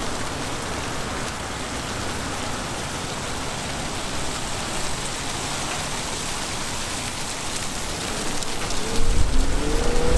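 Steady hissing noise with a low rumble. About nine seconds in it gets louder, and a low bass and a stepping melody come in.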